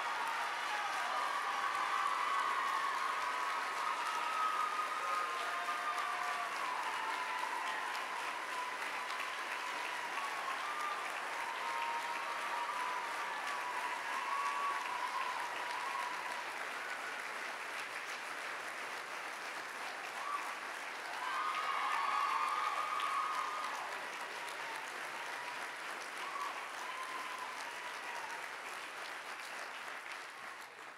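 Audience applauding steadily for a long stretch, with a few whoops of cheering rising above the clapping and a brief swell about two-thirds of the way through.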